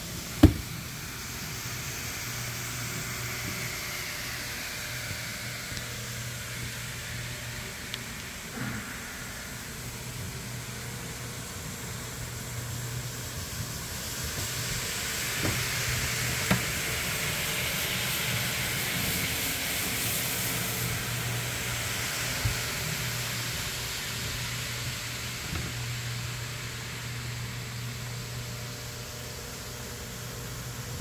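Rotary floor machine scrubbing a soaked, foamy rug: a steady motor hum under the hiss of the brush on the wet pile, somewhat louder through the middle. There is a sharp knock right at the start and a few light clicks.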